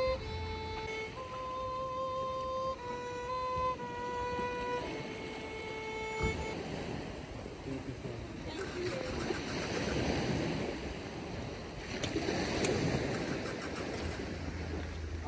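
Solo violin playing slow, held notes one at a time, stopping about six seconds in. After that, steady wind and surf noise with some voices.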